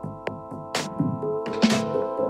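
Minimal techno playing. A sharp clap or snare hit comes about once a second, over a pulsing bass and a sustained synth chord, and a synth tone rises slightly in the second half.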